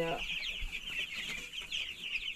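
A flock of young chicks, nearly two weeks old, peeping continuously: many short, high, falling cheeps overlapping into a steady chorus.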